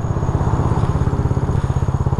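Modified fuel-injected scooter engine idling at a standstill, an even rapid pulse of about twelve beats a second.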